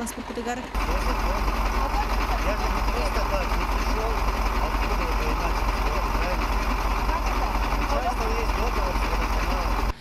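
A sewage vacuum tanker truck's engine running at idle close by, loud and steady, starting abruptly about a second in. Voices in conversation are faintly heard under it.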